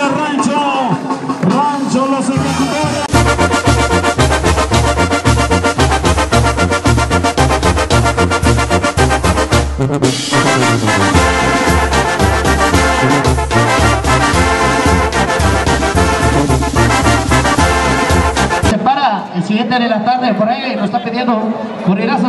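Mexican banda brass music with a steady, pounding bass beat. It starts suddenly about three seconds in and cuts off abruptly near the end, with voices before and after it.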